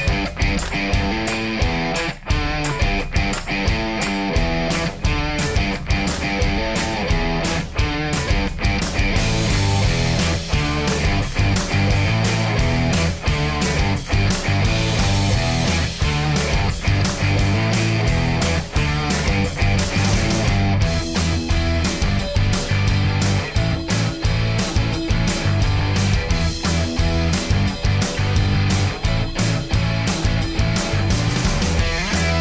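Background rock music with electric guitar and a steady beat.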